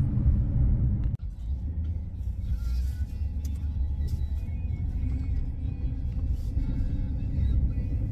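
Steady low rumble of a pickup truck being driven, heard from inside the cab: engine and road noise. A brief dropout about a second in marks a cut between two drives.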